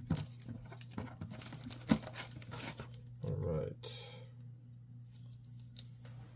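Thin plastic card sleeve crinkling as a trading card is slid into it: a run of small crackles and rustles that thins out after about three seconds.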